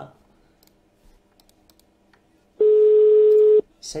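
Telephone ringback tone: one steady, clean beep lasting about a second, starting a little past halfway, in the slow repeating on-off pattern of a Polish ringing signal. It is the sign that the outgoing call is ringing at the other end and has not yet been answered.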